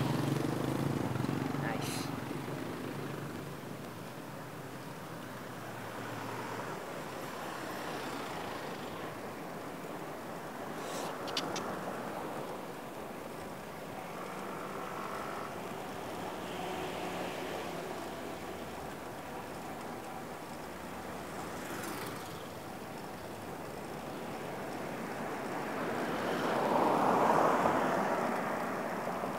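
Street traffic heard from a moving bicycle: a small motor vehicle's engine running close by at the start, then steady road and wind noise with a few light clicks, swelling again near the end as traffic comes closer.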